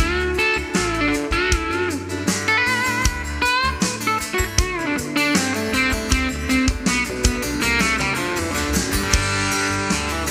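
Live country-rock band playing an instrumental break led by an electric guitar solo, with bent, wavering notes over a steady drum beat and bass.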